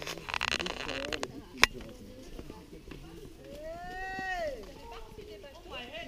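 Hikers on a grassy trail: footsteps and brush rustling, a sharp click about a second and a half in, then a person's drawn-out call or sung note that rises and falls once, a little past the middle.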